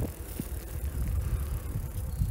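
Low, uneven rumble of movement noise from a camera travelling along a gravel towpath, with a few light knocks.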